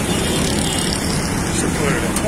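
Steady street traffic rumble mixed with the voices of a crowd.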